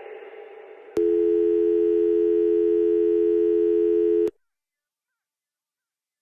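The last of the music fades away, then a telephone dial tone sounds: a steady two-note hum that holds for about three seconds and cuts off suddenly.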